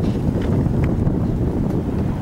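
Wind buffeting the camera microphone: a steady, rough low rumble.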